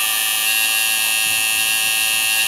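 Electric tattoo machine buzzing steadily as its needle works the line work of a tattoo into the skin of a forearm.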